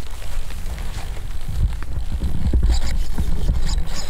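Wind buffeting an action camera's microphone, a heavy low rumble that grows stronger about halfway through, with a few light knocks and rustles as the camera is moved.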